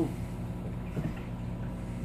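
Steady low electrical hum of aquarium equipment, with a faint short sound about halfway through.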